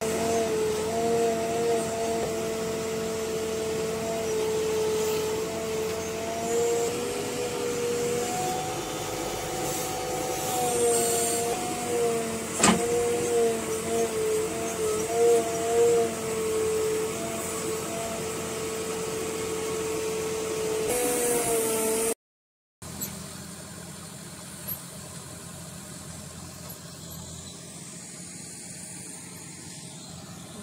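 JCB backhoe loader's diesel engine running steadily, heard from inside the operator's cab while the hydraulic digging arm works, its pitch rising and wavering slightly at times under load, with one sharp click about halfway through. After a cut, a quieter steady vehicle engine noise.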